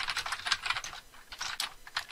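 Typing on a computer keyboard: a quick, irregular run of keystroke clicks with a brief lull about a second in.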